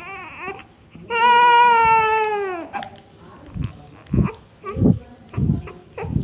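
A newborn baby crying: one long, loud wail about a second in that drops in pitch as it ends. Then come a few soft, low thumps spaced about half a second apart.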